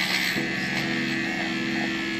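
Handheld electric milk frother running steadily, its whisk spinning in milk in a glass mason jar, giving an even buzzing whine.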